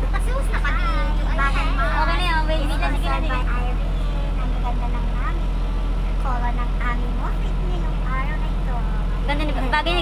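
Bus engine running with a steady low drone heard from inside the cabin, under women's voices talking.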